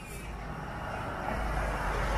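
A road vehicle approaching, its engine and tyre noise growing steadily louder.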